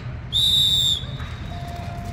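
A single short, steady blast on a coach's whistle, about half a second long, signalling the runners to start their stride.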